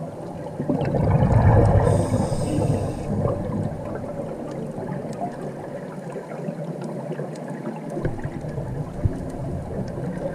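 Scuba breathing heard underwater: exhaled bubbles gurgling and rushing past the camera, loudest in a swell about a second in, with a brief hiss about two seconds in.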